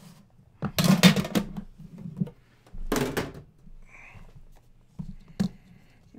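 Cardboard card box being handled and opened by hand: two loud bursts of scraping and rustling, about a second in and about three seconds in, and a single sharp click near the end.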